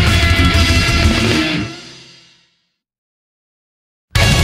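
Death metal song with electric guitars ending: the band plays for about a second and a half, then a final chord rings out and fades to silence about two and a half seconds in.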